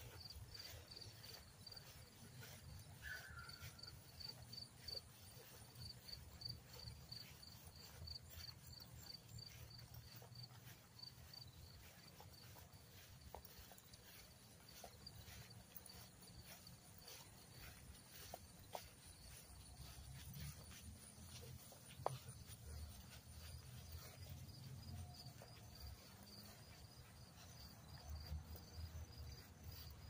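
Faint insects chirping in an evenly repeated high pulse, over low, uneven rustling and soft thuds of footsteps through grass.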